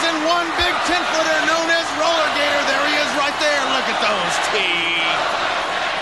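Voices talking over steady crowd noise in an arena, with a brief high tone about four and a half seconds in.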